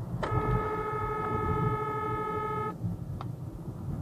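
A car horn held in one long steady blast of about two and a half seconds, cut off sharply, over the low rumble of a moving car.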